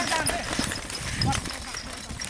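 Hoofbeats of a pair of racing bulls pulling a light cart over a dirt track, an irregular patter of soft thuds that grows fainter as they move away. A man's drawn-out shout ends right at the start.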